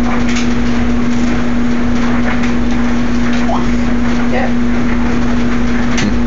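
A steady, loud hum at one constant pitch that does not change at all, with a faint even hiss beneath it.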